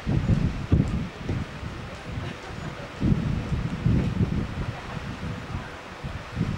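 Wind buffeting the camcorder microphone in irregular gusts, strongest in the first second and again about three seconds in.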